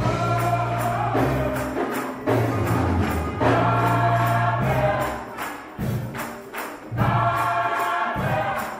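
Gospel choir singing in parts over a bass line with a steady beat. The voices thin out briefly about two-thirds of the way through, then come back in full.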